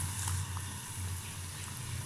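Potato tikkis frying in hot oil in a kadhai over a low flame, with a steady gentle sizzle and bubbling over a low hum.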